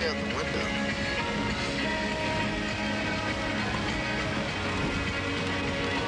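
Music playing inside a moving car's cabin, over a steady low road noise.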